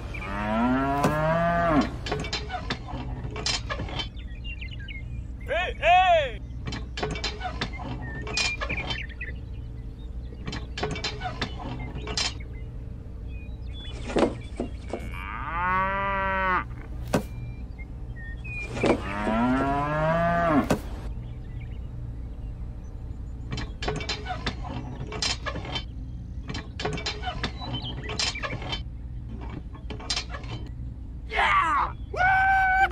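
Four cow moos spaced several seconds apart, with short sharp clicks in between and a steady low hum underneath.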